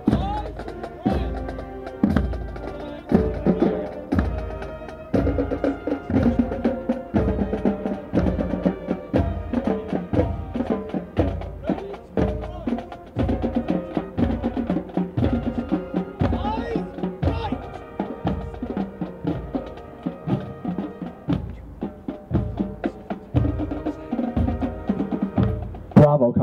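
Military band playing a march, pitched band parts over a steady bass drum beat about twice a second.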